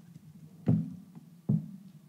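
Two dull knocks a little under a second apart, each with a short low ring after it.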